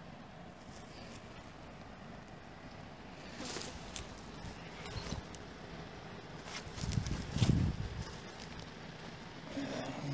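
Quiet outdoor background with a few brief rustles and clicks, and a short low rumble about seven seconds in.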